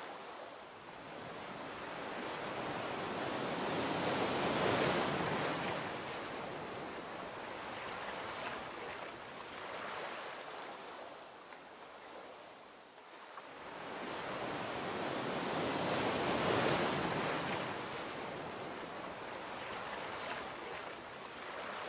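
Ocean surf washing onto a shore, swelling and ebbing in two slow waves, loudest about a quarter of the way in and again about three quarters through, with a lull between.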